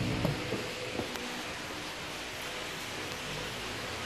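Steady background noise in a workshop, an even hiss with a faint hum under it, and a few light clicks in the first second or so.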